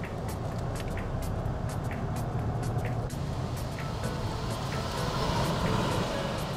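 Steady low rumble of a moving road vehicle, with background music carrying a light ticking beat about three times a second.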